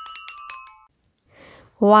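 Bright struck notes of a glockenspiel-like mallet-percussion jingle ringing out and fading away by about a second in. A woman's voice then says "one" near the end.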